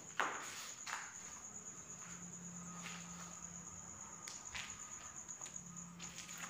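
Crickets trilling at night, a steady, high, finely pulsed chirring, with a few scattered footsteps.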